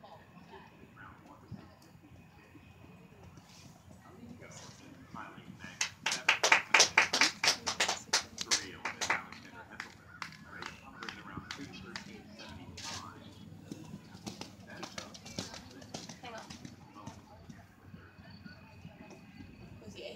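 Hands clapping close to the microphone, quick and even, for about three seconds starting some six seconds in, amid faint, indistinct voices.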